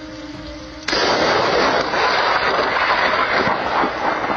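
A sudden loud blast about a second in, followed by a loud, rough rumble that keeps going for the next few seconds.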